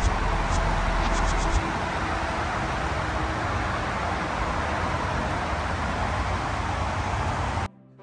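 Steady traffic noise from a nearby highway, with low wind rumble on the microphone in the first second or two and a few faint high chirps. It cuts off abruptly near the end and music starts.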